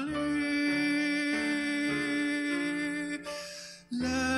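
A slow hymn: long held notes over low accompanying notes that change about every half second to second. The music fades out a little after three seconds in, and a new phrase starts at the very end.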